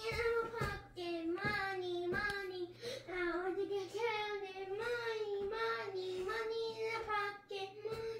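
A child singing a tune in a high voice, long held notes that waver up and down, broken only by a few short breaths.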